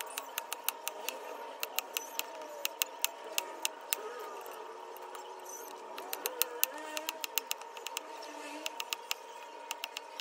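Knife chopping garlic cloves on a cutting board: quick sharp taps, several a second, with a short pause about halfway through. A steady high-pitched hum runs underneath.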